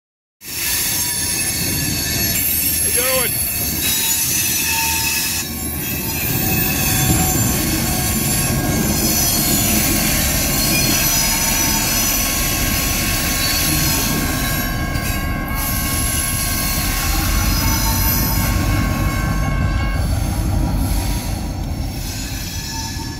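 CSX diesel locomotive hauling a tank car slowly around a curve, steel wheels squealing against the rail in long, steady high tones over the low rumble of the engine and rolling cars.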